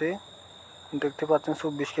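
A person's voice narrating, with a short pause early on and speech resuming about a second in, over a constant high-pitched tone in the background.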